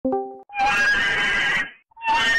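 A short steady tone, then a loud, harsh animal cry lasting about a second, starting half a second in.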